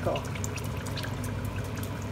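Pork pieces sizzling in caramelized sugar in a pot, with many small scattered crackles, as light soy sauce is poured onto them.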